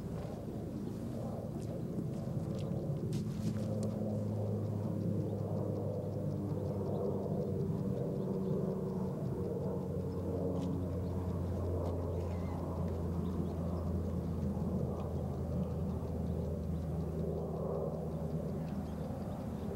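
A motor or engine running steadily, a low even hum with no change in speed.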